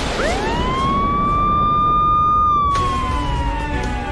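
Ambulance siren giving one long wail: it rises quickly in pitch, holds steady, then slides slowly down through the second half.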